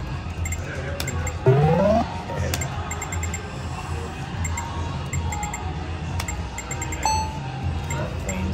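Video poker machine sound effects during rapid play: quick runs of short electronic beeps as cards are dealt and drawn, with a loud rising electronic sweep about a second and a half in, over a steady low casino hum.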